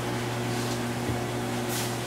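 Steady low hum with a few faint higher overtones, like an appliance or electrical hum in the room, with a brief soft hiss near the end.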